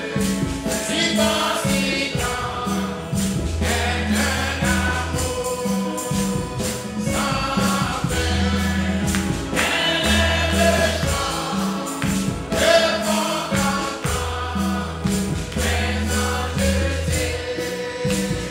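Gospel music in church: a group of voices singing together over a bass line and a steady percussion beat.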